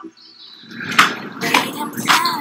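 A few sharp knocks or clicks over rising room noise, with a voice beginning near the end.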